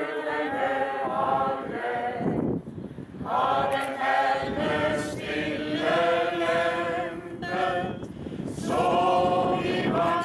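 A group of men and women singing a song together as a choir, holding long notes phrase by phrase, with short breaks between phrases about two and a half seconds in and again near the eight-second mark.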